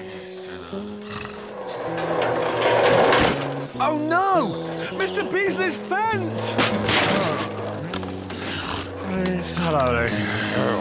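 Cartoon background music, with a loud noisy crash building to its peak about three seconds in as a wooden fence is flattened by a rolling steamroller. A few warbling, swooping whistle-like glides follow.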